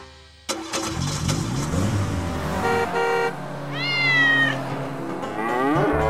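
A cartoon cat meowing about four seconds in, with a slightly falling pitch, and calling again near the end. Before it come two short pitched beeps, among children's-cartoon sound effects.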